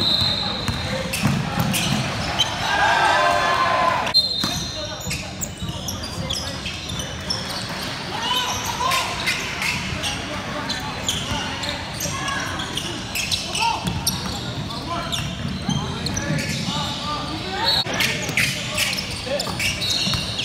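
Basketball bouncing on a hardwood gym floor during play, a run of irregular thuds in a reverberant hall, with voices of players and spectators throughout.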